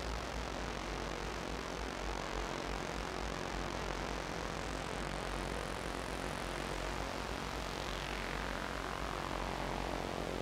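Electronic synthesizer drone: a dense wash of noise whose filter sweeps slowly up about halfway through and back down toward the end, over a low, rumbling bass.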